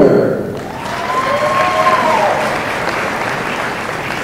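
Audience applauding a graduate, with one drawn-out cheer rising and falling in pitch from about one to two seconds in.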